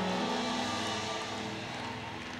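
Soft background music from the band: a held chord sustained under the sermon, fading slowly.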